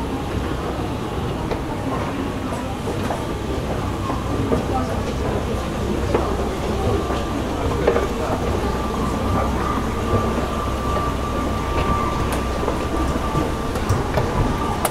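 Running noise inside an E233-series commuter electric train's motor car: steady wheel-on-rail rumble with a few light clicks. A steady whine holds for about five seconds in the second half.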